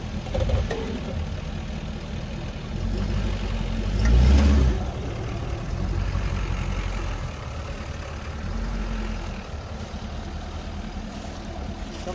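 Ford F-350 pickup creeping slowly at idle, its engine giving a steady low rumble, with one louder surge about four seconds in as the front wheel rolls over a buried PVC drain pipe.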